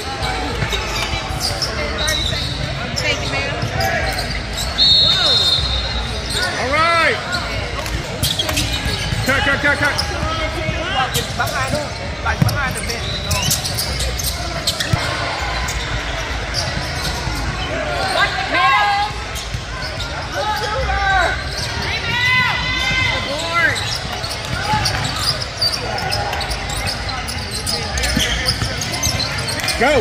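Basketball bouncing repeatedly on a hardwood gym floor during play, with voices calling out across a large echoing hall.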